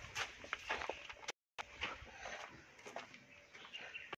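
Faint footsteps and camera handling noise, scattered light taps and rustles, with the sound cutting out completely for a moment about a second and a half in.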